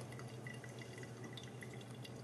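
A thin stream of water from a gooseneck kettle trickling faintly into a paper filter in a pour-over coffee dripper, with soft dripping ticks and a low steady hum underneath.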